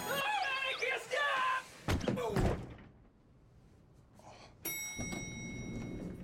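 A man yelling as he slides across a slippery floor, then two heavy thuds of an impact about two seconds in. Near the end comes a sudden sustained high, bell-like ring.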